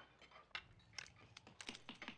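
Near silence with faint, scattered light clicks of cutlery on dinner plates, about half a dozen, starting about half a second in.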